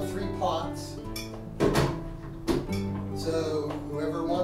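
Acoustic guitar music, strummed with held chords, with two sharp knocks about a second apart near the middle.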